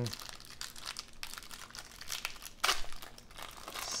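Clear plastic wrapper of a trading-card pack crinkling as it is pulled open by hand, with a few sharper crackles, the loudest about two-thirds of the way through.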